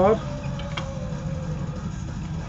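A steady low hum with a faint click about a second in, as a plastic cassette case is handled to take out its inlay card.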